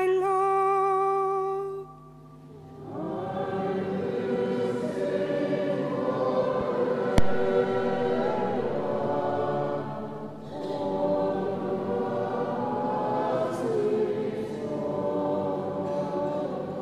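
A solo female cantor holds the last note of the psalm response, then after a brief pause the choir and congregation sing the response together, many voices in unison. A single sharp click sounds about seven seconds in.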